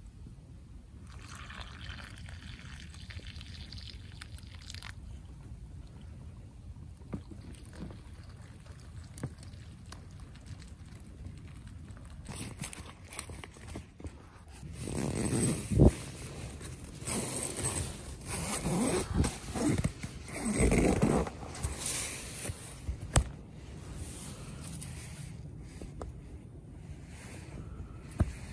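Hot water poured from a pot into a freeze-dried meal pouch about a second in, then a spoon stirring and scraping in the plastic-foil pouch, which crinkles loudly in irregular bursts through the second half.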